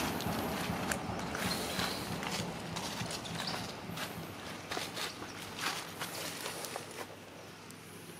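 Footsteps and rustling in dry leaf litter on bare ground: irregular crunches and crackles that grow quieter toward the end. A low steady hum underneath fades away within the first few seconds.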